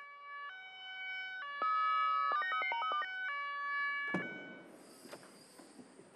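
Ambulance two-tone siren stepping between high and low notes, with a quicker run of changing notes in the middle. About four seconds in it gives way to a sudden rush of noise.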